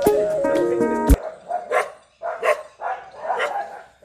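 Background music stops abruptly about a second in, then a dog barks repeatedly in short, irregular barks.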